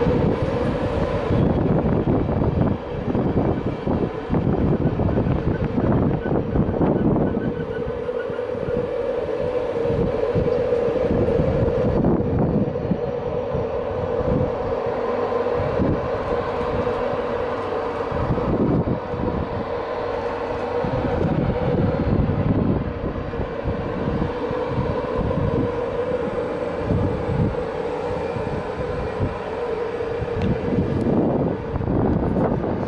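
LNER InterCity 225 train of Mk4 coaches running slowly past along the platform: a steady whine held throughout over a rumble of wheels on rail, with irregular knocks as the wheels pass over rail joints.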